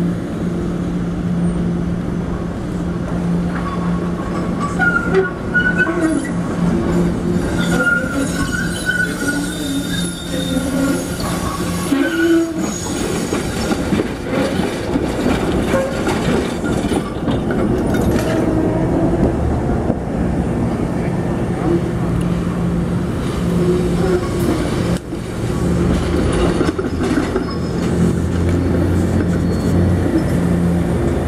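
SEPTA Kawasaki light-rail trolley coming out of a tunnel portal and rounding a tight curve. Its wheels squeal on the curve in several high screeches between about 5 and 12 seconds in, over a steady low hum. A deeper rumble comes in near the end as a second trolley passes.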